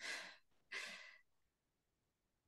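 Two short breathy exhales, like sighs, about two-thirds of a second apart.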